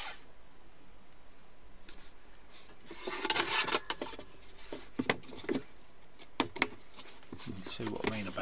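Loft floor boards being handled and fitted over the joists: a scraping slide about three seconds in, then several sharp knocks as boards are set and pressed into place.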